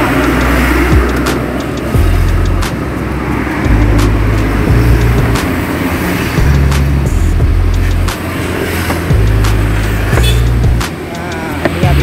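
Irregular knocks and scrapes of a wooden pestle and spatula in a stone mortar (cobek) as rujak peanut-chili sauce is ground and mixed, over a heavy low rumble.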